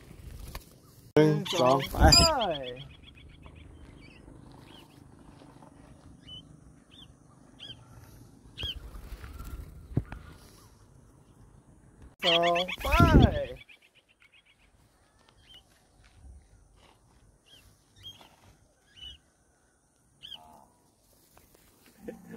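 Cockatiels giving short, high chirps, singly and about a second apart, scattered through the middle and the second half. A man's voice counts "one, two, go" twice, once near the start and once about halfway.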